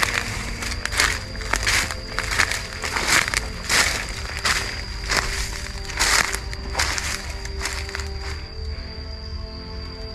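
Footsteps crunching through dry leaf litter at a walking pace, about one step every second or less. The steps are loudest in the first seven seconds and fainter after that.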